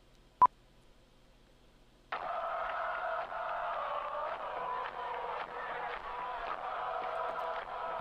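One short, sharp click about half a second in. Then, from about two seconds in, the opening of a rap track's beat plays back: a steady, thin, radio-like sound resembling a cheering crowd, with no vocals yet.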